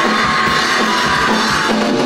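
Live rock band playing an instrumental passage without vocals: electric guitar over a Pearl drum kit, with a steady beat of kick drum strokes.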